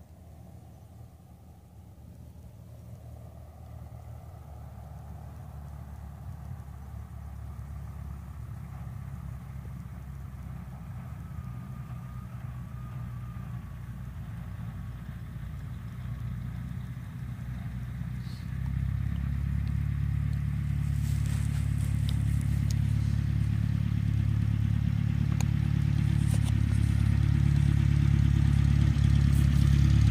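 Small single-engine plane's piston engine running, growing steadily louder as it comes closer, with a sudden jump in level about eighteen seconds in.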